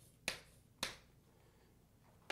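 Two sharp taps about half a second apart, the sound of a marker or chalk striking a board while writing.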